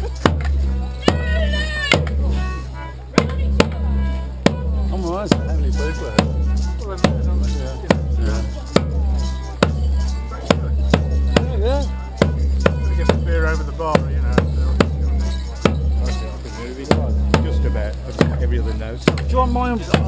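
Border Morris dance band playing, driven by a steady bass drum beat about twice a second, with sharp clacks of the dancers' sticks striking together and crowd voices mixed in.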